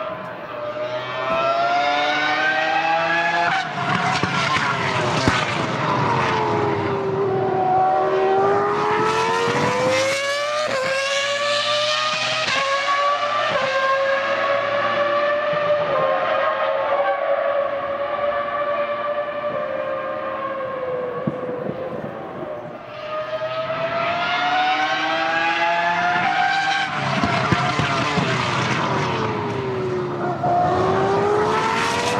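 A high-revving racing car engine, its pitch sliding down and back up over several seconds at a time as it slows and speeds up, with a quick climb about ten seconds in.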